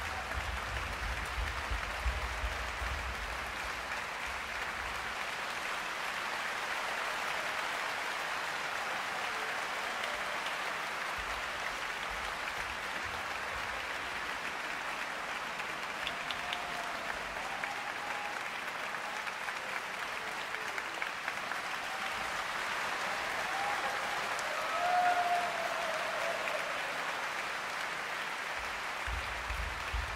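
Large audience applauding steadily, with a few voices calling out over the clapping in the second half, the loudest call a little before the end.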